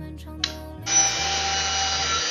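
Handheld electric circular saw starting about a second in, then running with a steady high whine as its blade rips lengthwise along a green bamboo pole.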